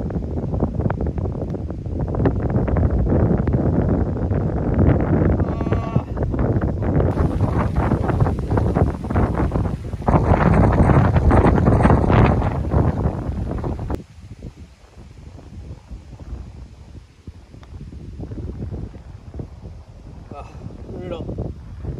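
Wind buffeting the microphone in a loud, gusting rumble. It cuts off abruptly about fourteen seconds in, leaving a quieter rumble.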